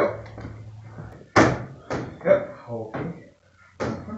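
Clunks and knocks of a pickup's fiberglass hood being unlatched and worked open: one sharp knock about a second and a half in, followed by several lighter ones.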